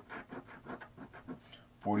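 A coin scratching the coating off a scratch-off lottery ticket on a hard table, in quick short strokes about four or five a second.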